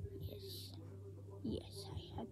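Soft whisper-like breath sounds from a boy's mouth close to the microphone: two short hissy puffs, about half a second in and again near the end, over a steady low hum.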